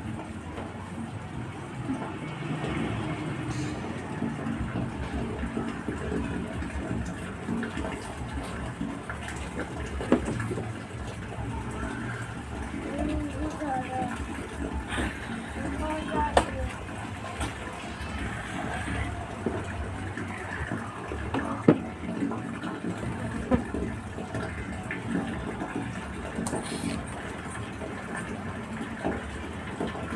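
Voices and a steady background noise, with a few sharp clicks about ten, sixteen and twenty-two seconds in.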